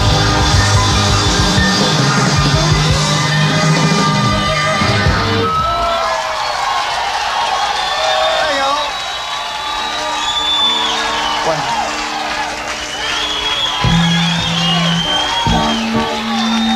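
A live rock band plays the last bars of a song with loud guitars, bass and drums, stopping about five seconds in. The audience then cheers and whistles, with a few held notes from the stage underneath.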